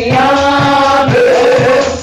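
A woman singing a gospel song into a microphone, holding two long notes, with a drum kit keeping a steady beat underneath.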